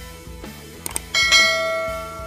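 Subscribe-animation sound effects: a quick double mouse click about a second in, then a bright bell ding struck twice in quick succession that rings on and slowly fades, over soft background music.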